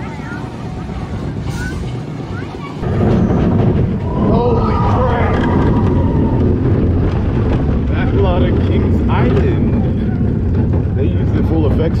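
Backlot Stunt Coaster train running along its steel track: a steady loud rumble with wind on the microphone, starting suddenly about three seconds in. People's voices rise over it now and then.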